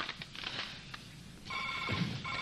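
Telephone ringing with an electronic ringer of several steady pitches: a pause between rings, then a new ring begins about one and a half seconds in.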